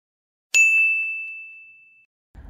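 A single bright, bell-like ding that rings on one high tone and fades away over about a second and a half, set in dead silence: an edited-in sound effect.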